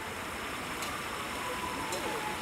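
Steady outdoor background noise with faint distant voices, a faint steady tone and two light clicks.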